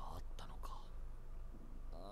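Soft speech in the first second, from anime dialogue playing at low volume, fading to quiet with a steady low hum underneath.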